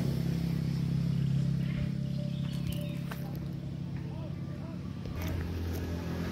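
A steady low engine hum, as of a motor running nearby, slowly fading, with its pitch dropping lower near the end.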